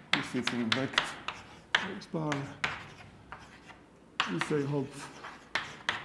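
Chalk writing on a blackboard: a run of sharp taps and short scraping strokes as the letters are written, some strokes coming close together and others a second or so apart.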